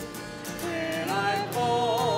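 A communion hymn sung with instrumental accompaniment. The music dips briefly at the start, and the singing comes back in about half a second in, gliding up to a higher note.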